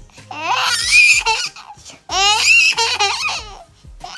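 A nine-month-old baby giggling in two long bursts of high-pitched laughter, each starting with a rising squeal.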